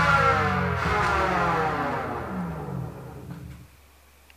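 A salsa record playing on a turntable slows down as the platter is stopped. The whole band's pitch slides steadily downward and the sound fades away by about three and a half seconds in.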